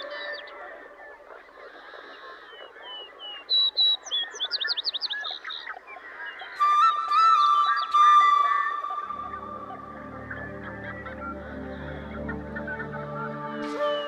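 Birds calling and singing, with quick runs of chirping notes over a soft music bed. About nine seconds in, low sustained music chords come in under the birdsong.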